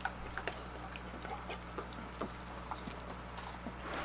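A dog chewing and licking a soft treat taken from a hand: irregular small clicks and smacks, a few a second, over a faint steady hum.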